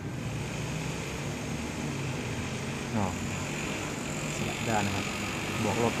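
A steady low drone of a running motor in the background, with no sudden sounds.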